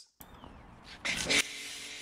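Pressure washer spraying water onto a motorcycle: a steady hiss that comes in about a second in, louder for a moment as it starts.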